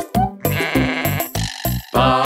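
A sheep's bleat, one wavering "baa" lasting about a second, starting about half a second in. It plays over a children's song backing track with a steady beat.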